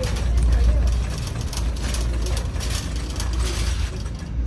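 Clicks and rustling of packaged thank-you cards being handled on a metal peg-hook rack, over a steady low rumble.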